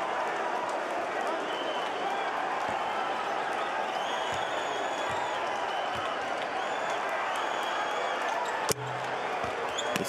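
Basketball arena ambience during a free throw: a steady bed of indistinct voices and hall noise, with a few soft knocks of a basketball bounced on the hardwood court. A single sharp thud comes near the end.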